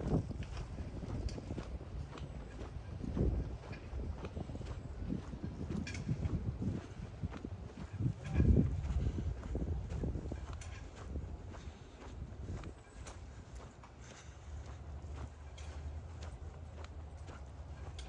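Footsteps on a paved path at an easy walking pace, faint and evenly spaced, with a few low rumbles in the background.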